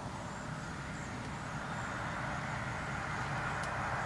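A motor vehicle on a nearby road: a steady rushing noise that slowly grows louder.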